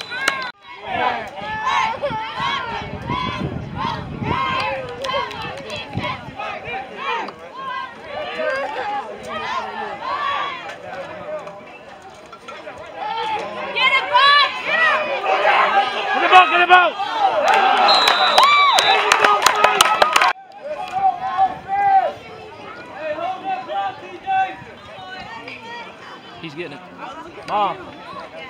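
Sideline crowd of spectators and players talking and shouting over one another, the voices growing louder and more excited about halfway through, then dropping off suddenly.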